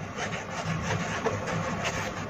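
Fingertip rubbing over the embroidered logo of a cotton baseball cap, an uneven scratchy rubbing noise.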